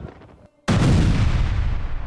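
A heavy artillery explosion booms suddenly after a brief silent gap, well under a second in, and its deep rumble fades slowly. Before the gap, the tail of an earlier blast dies away.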